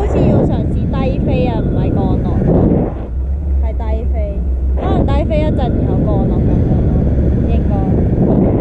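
Steady rumbling wind rushing over a camera microphone during a tandem paraglider flight, with a person's voice breaking through in short stretches.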